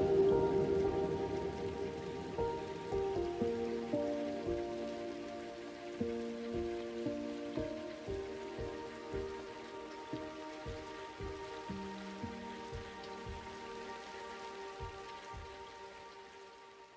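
Soft ambient instrumental music with held, slowly changing notes, fading out steadily, laid over the sound of rain falling with scattered drops.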